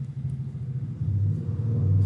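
A low rumble with a hum to it, growing louder toward the end.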